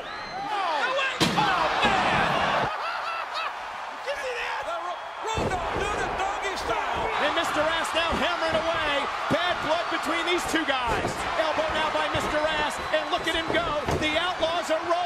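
Several voices overlapping with no clear words, with a single sharp knock about a second in.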